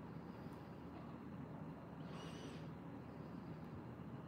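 Quiet room tone with a low steady hum, and one brief, faint, high-pitched chirp about two seconds in.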